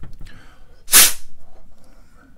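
A single sharp puff of breath blown by mouth about a second in, short and loud, then fading: air blown into a rinsed keyboard keycap to knock out the water trapped inside. A few light clicks of handling come just before it.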